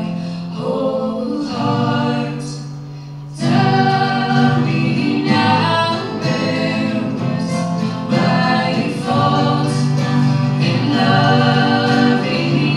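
Live acoustic folk music: two acoustic guitars and a mandolin strummed under several voices singing in harmony. The music swells suddenly about three and a half seconds in and stays loud.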